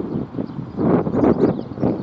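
Wind buffeting an outdoor microphone in uneven gusts.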